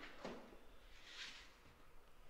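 Drywall knife spreading joint compound along a plaster corner: two faint, soft scrapes about a second apart.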